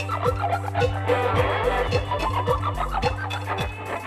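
Rock band music with electric guitar, a sustained bass line and a steady kick-drum beat about twice a second.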